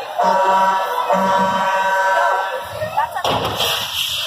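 A show performer's amplified voice holding long drawn-out calls, then about three seconds in a sudden rushing blast with a low rumble, like a pyrotechnic rocket being fired.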